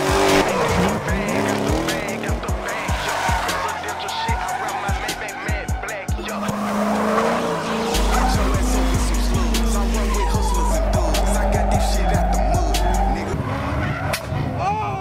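Car tyres squealing as cars slide and do smoky burnouts, with engines revving, mixed with music that has a steady beat and a heavy bass stretch from about the middle to near the end.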